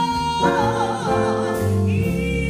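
Female jazz vocalist holding a sustained high note, which from about half a second in swings with a wide vibrato, over guitar and double bass accompaniment.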